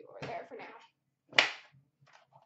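Metal card-box tin being handled, then one sharp clack about one and a half seconds in as its hinged lid is opened.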